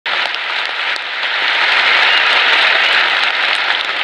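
Large stadium crowd applauding: a steady, dense wash of clapping that grows a little louder after the first second or so.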